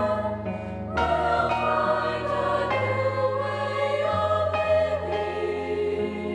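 Mixed high school choir singing in harmony, holding long chords that change every second or two, with a slight dip and then a fuller entry about a second in.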